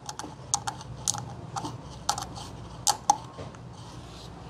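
Irregular small metal clicks and taps as the master cylinder pushrod of a new Hydro Boost brake booster is pressed in and let spring back against its return spring, checking that it moves freely.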